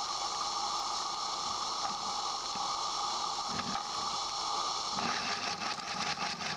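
Roundhouse Argyll live-steam model locomotive hissing steadily as it clears condensate from its cylinders. About five seconds in it starts to turn over, with a quick, even run of exhaust beats.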